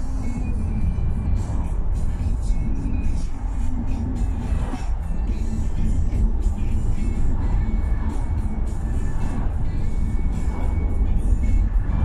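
Steady road and engine rumble inside a moving car's cabin, with music playing in the car over it.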